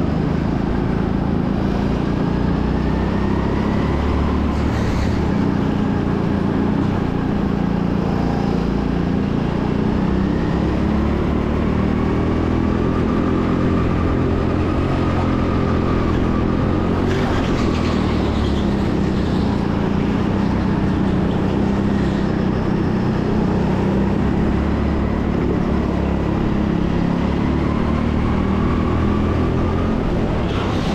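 Go-kart engine heard from on board at racing speed, its pitch rising and falling as the kart accelerates along the straights and slows for the corners.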